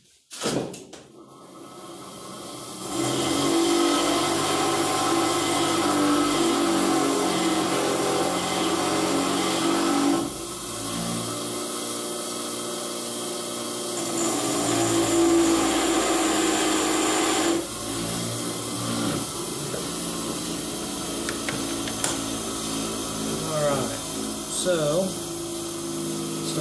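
Bench grinder spinning up, then running steadily while a lathe turning tool is sharpened on it, the grinding level stepping down and up a few times as the tool is pressed on and eased off.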